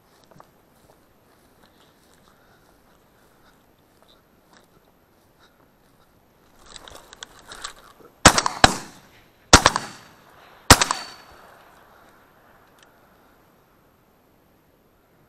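Armsan 612 semi-automatic shotgun fired at a flushed duck: a close pair of shots past the middle, then two more about a second apart, each with a short echo. A rustle of movement builds just before the first shot.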